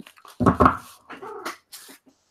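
A dog's brief cries, the loudest two about half a second in, followed by softer pitched sounds and a short rustle near the end.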